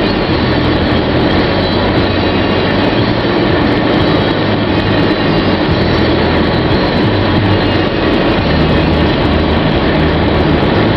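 Steady noise inside a stopped car's cabin: a low engine hum under an even rushing hiss, with no breaks or single events.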